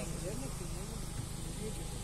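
Tour boat's engine running with a steady low hum, under quiet talk among passengers.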